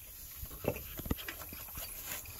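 A few light, irregular knocks and clicks as a new truck cab air bag is handled and pushed into its mount by hand.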